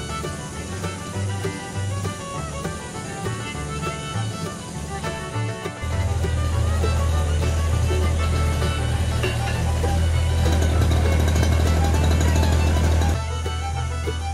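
Fiddle background music; about six seconds in, the steady low drone of a Hitachi mini excavator's diesel engine comes in loud over it and cuts off abruptly about a second before the end.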